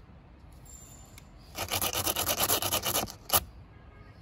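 A sealant pen's tip rubbed quickly back and forth over a rubber tyre-repair plug, a dense rasping scrape of about ten strokes a second for a second and a half, coating the plug with sealant, followed by one sharp click.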